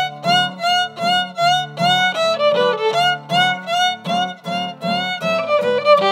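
Fiddle playing a swing tune in a steady rhythm, about two bowed notes a second with slight slides in pitch, accompanied by acoustic guitars strumming chords.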